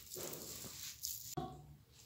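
Hands kneading a moist ricotta and coconut-flour dough in a bowl: faint soft squishing, fading out near the end.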